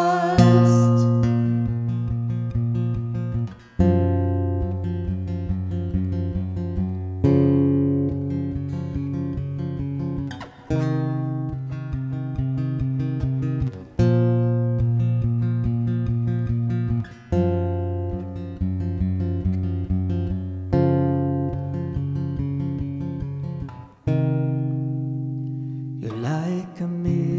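Solo Yamaha acoustic guitar playing an instrumental break in the key of D: a steady rhythmic chord pattern, the chord changing about every three and a half seconds with a brief dip at each change.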